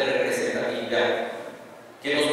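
A man speaking into a microphone, with a short pause near the end.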